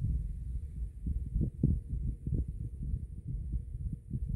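Irregular low rumbling buffets on the microphone, soft thumps several a second with no clear tone.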